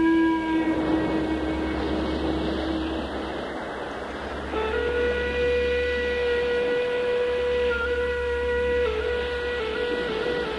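Shakuhachi (Japanese bamboo flute) playing long held notes: a low note fades out in the first seconds, a breathy hiss follows, and a higher note enters about halfway through, held steady and then wavering in pitch near the end.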